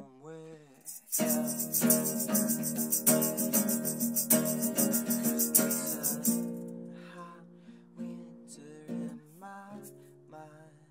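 Nylon-string classical guitar strummed, with a man singing over it. From about a second in to about six seconds the playing is louder, with a fast, bright rattle keeping time. After that it drops back to quieter playing.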